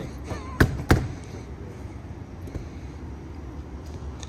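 Two sharp thuds in quick succession, about a third of a second apart, just under a second in, over a low steady background hum.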